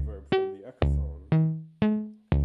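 Sequenced modular synthesizer notes from an Intellijel Shapeshifter oscillator on its Chirp waveform, stepped through a D-flat major scale by a René sequencer: short plucked notes about two a second, each with a sharp attack and quick decay, jumping between pitches. A deep low thud under the first note drops out for the rest.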